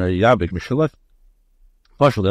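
A man's voice speaking for just under a second, then a pause.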